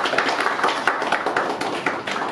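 A small group of people clapping: quick, irregular hand claps running on steadily.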